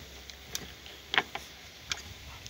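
A few short plastic clicks from a spark plug lead's boot being worked back onto the spark plug; about four clicks, the loudest just past a second in.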